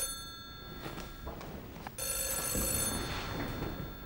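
Telephone ringing: one ring dies away early on, then a second ring starts about two seconds in and fades.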